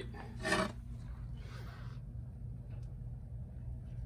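A steady low electrical hum, with a brief vocal sound about half a second in and a soft scratch of a pen on a notepad about a second and a half in.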